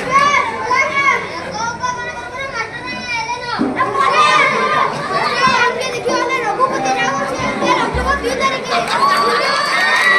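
Children shouting and calling out over each other, with crowd noise underneath and a short low thump about eight seconds in.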